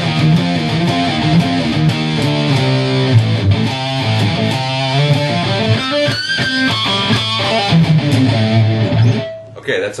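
Electric guitar heavily distorted by an Electro-Harmonix Metal Muff with Top Boost, playing a low heavy-metal riff with a few higher notes about six to seven seconds in. It stops abruptly near the end. The pedal's EQ is set with mids scooped and treble and bass boosted, with gain at halfway, giving a scooped heavy metal tone.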